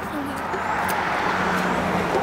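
Steady outdoor street noise of road traffic with voices in the background; a low engine hum comes in partway through.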